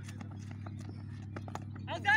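Cricketers' footsteps as they run between the wickets: a scatter of light, irregular taps over a steady low hum.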